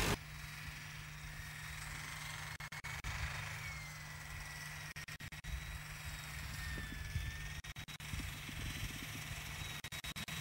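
Ford Ranger pickup's engine running as the truck drives through deep snow, heard faintly, with a slowly drifting whine over a low rumble. The sound cuts out briefly several times.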